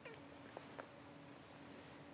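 Near silence: a faint steady hum, with a brief faint falling tone at the very start and two faint short sounds shortly after.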